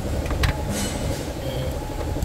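Steady low rumble of a running car engine in the engine bay, with one sharp metallic click about half a second in as a screwdriver works at the throttle body and its throttle position sensor.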